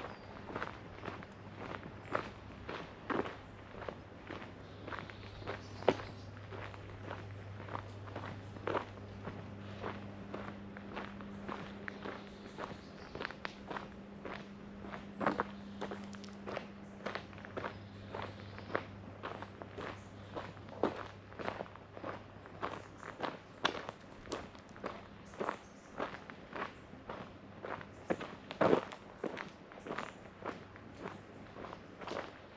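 Footsteps of a person walking along a park path at a steady pace, each step a short crunch. A faint steady low hum runs underneath.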